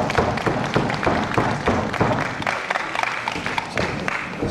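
Audience clapping: a steady run of many sharp claps.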